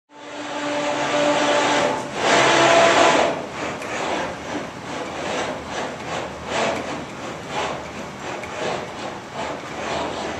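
Six-legged motion platform running: a mechanical whir with a steady whine in the first two seconds, a loud surge about two seconds in, then rhythmic swells about once a second.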